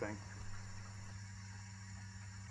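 A faint, steady low hum.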